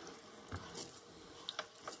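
Faint, scattered soft clicks and scrapes of a silicone spatula stirring a thick sour-cream and mushroom sauce in a nonstick pot.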